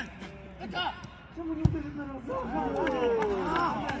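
Men's voices calling out across a football pitch, with one sharp thud of a football being kicked about one and a half seconds in.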